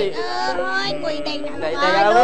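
A high-pitched voice singing in long, wavering notes over music, ending on a loud note that slides up and then falls.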